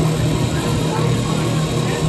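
Bass-heavy electronic dance music played loud over a club sound system and picked up by a phone microphone: a steady deep bass tone runs under a dense wash of higher sound.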